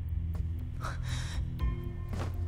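Drama background score: a low sustained drone, with a short breathy hiss about a second in and held higher notes coming in near the end.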